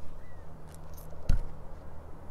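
Low steady outdoor rumble with one dull thump about two-thirds of the way through, from the handheld phone being knocked as it is swung round. A faint short whistle-like chirp sounds near the start.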